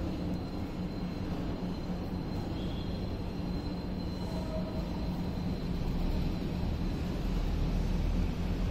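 Heavy machinery in a copper bar and rod manufacturing plant running with a steady low rumble and hum. A faint high steady whine sits over it for the first half and then fades.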